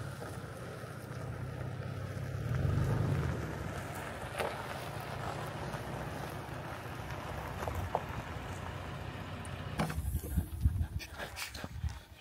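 Wind buffeting the microphone, a steady low rumble with a gust swelling a few seconds in, and a few irregular knocks in the last two seconds.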